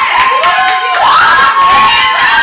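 A group of women's voices cheering and shouting together, many high voices overlapping at once.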